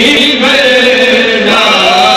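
Male voice chanting a devotional recitation in long, drawn-out notes.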